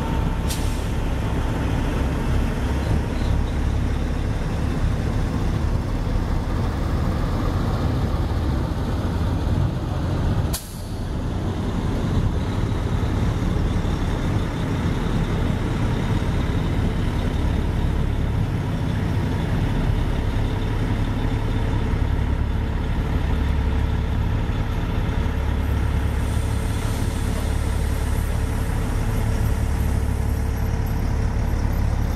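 Semi-truck diesel engines giving a steady low rumble as the tractor-trailers pull away one after another. A sharp click comes near the start, and a brief break with a dip in loudness about a third of the way in.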